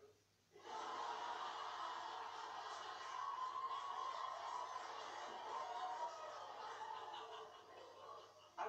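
Sitcom studio audience laughing, heard through a television's speaker; the laughter swells about half a second in after a brief hush and tails off near the end.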